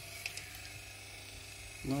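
1978 Cadillac Eldorado windshield wiper motor running steadily on the bench, with a low hum under a higher whine from its motor and gearing.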